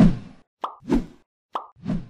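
Edited sound effects for an on-screen subscribe animation: a pop, then two pairs of a short click followed by a lower pop, the pairs about a second apart.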